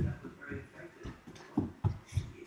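Speech from a television playing in the room, with two sharp footsteps on a wooden floor near the end.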